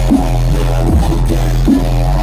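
Loud, bass-heavy electronic dance music through a festival stage sound system: a thick sustained low bass under a strong beat landing roughly every 0.8 seconds.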